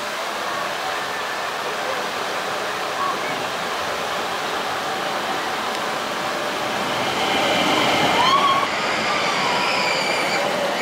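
Vekoma family boomerang roller coaster train rolling along its steel track with a steady rushing rumble that grows louder as it passes close by, from about seven seconds in. Riders' voices call out as it goes by.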